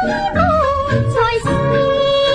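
A woman singing a Cantonese film song over an instrumental accompaniment. Her ornamented, wavering melody line winds downward through the first second and a half, then settles on a held note.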